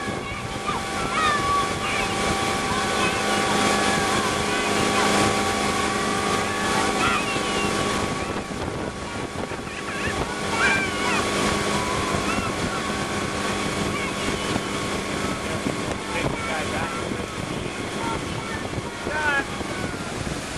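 Motorboat engine running steadily at towing speed, with rushing water from the wake and wind buffeting the microphone.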